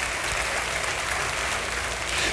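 Congregation applauding, a steady even clapping of many hands.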